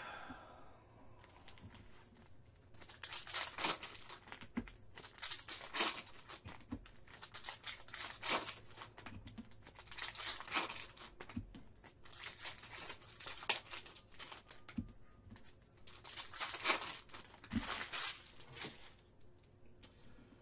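Foil wrappers of 2022 Bowman Chrome baseball card packs being torn open by hand: a string of short ripping and rustling bursts, several every couple of seconds.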